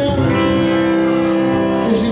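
Amplified electric guitar strumming held chords, with a chord change shortly before the end.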